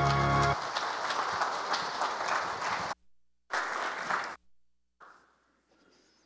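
The last chord of a song's accompaniment music stops about half a second in, followed by a congregation applauding. The applause cuts out abruptly near the middle, comes back for about a second, then drops away to faint room sound.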